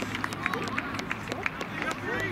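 Faint shouts and voices of footballers on an outdoor pitch, with an irregular run of short sharp taps and slaps.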